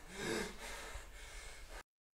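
A man's gasping breath about a quarter of a second in, followed by breathy noise, which cuts off abruptly to dead silence near the end.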